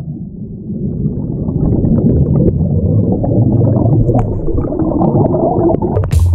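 Muffled churning water and bubbling heard through a camera held underwater while a swimmer strokes through a pool, with a low rumble and nothing high-pitched.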